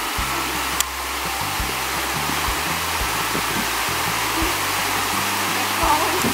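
Shallow stream running over rocks in a small cascade, a steady rush of water, with one short click about a second in.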